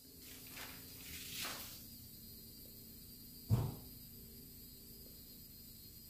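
Quiet room tone with one short, dull thump about three and a half seconds in.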